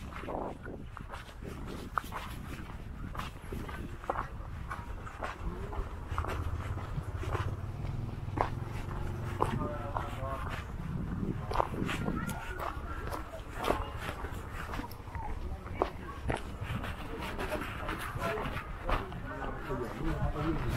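Outdoor street sound on a walk along a dirt road: footsteps crunching on the ground, with faint voices of people around, and a low rumble for a few seconds in the middle.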